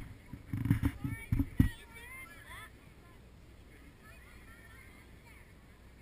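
Several low thumps and rumbles on the microphone in the first second and a half, with a run of faint high calls whose pitch glides up and down until nearly three seconds in; then a quiet, steady outdoor background.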